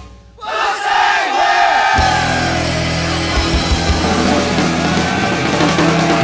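Loud rock band recording. The music drops out briefly at the start, a held, wavering note comes in, and the full band with bass and drums crashes back in about two seconds in and plays on.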